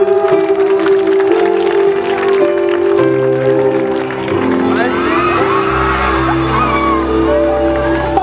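A live band playing on stage, held keyboard chords over drums, with a deep bass part coming in strongly past the middle. The audience claps along and cheers.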